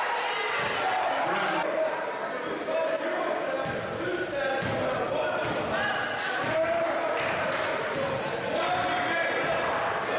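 Basketball being dribbled on a hardwood gym floor during live play, with the voices of players and spectators echoing around the gym.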